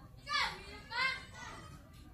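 Two short high-pitched calls in the background, like children's voices, about half a second apart, then quiet room background.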